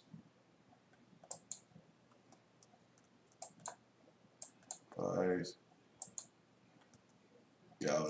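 Faint computer mouse clicks, spread unevenly, several of them in quick pairs a fraction of a second apart.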